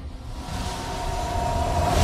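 A low rumbling drone with a held tone above it, swelling steadily louder: a trailer riser sound effect leading into the next beat.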